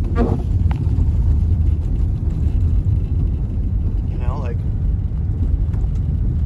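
Steady low rumble of a car driving on a snow-packed road on studded winter tires, heard from inside the cabin, with the windshield wipers sweeping the glass.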